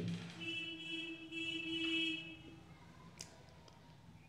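A faint steady pitched tone, held for about two seconds and then fading out, followed by a single soft click near the end.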